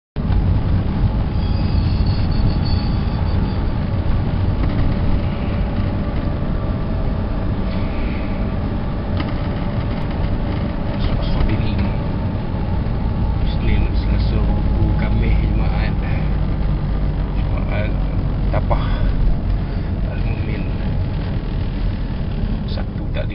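Car cabin noise while driving: a steady low rumble of engine and road, with a few brief higher sounds in the second half.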